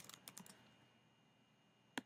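Faint computer keyboard typing: a few quick keystrokes in the first half-second, then near silence, and a single click near the end.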